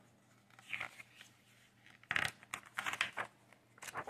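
Page of a picture book being turned by hand: quiet at first, then from about halfway a string of short paper rustles and crackles as the page is lifted and flipped.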